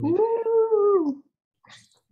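A dog howling: one long howl of about a second that rises, holds and falls away at the end.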